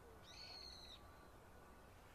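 A single high, fairly level bird call lasting under a second, about a quarter second in, over a faint low background rumble.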